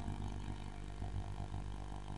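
Faint, steady low hum under quiet room tone, with no distinct event.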